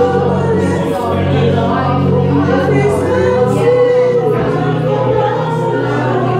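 Gospel worship music: several voices singing together over steady, sustained low notes.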